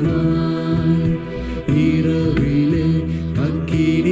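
A Tamil Christian worship song performed live: a singer's voice over keyboard and bass accompaniment, with one sung phrase ending and the next starting about a second and a half in.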